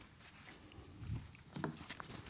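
Faint footsteps and shuffling of a person walking, with a short pitched sound and a sharp click near the end.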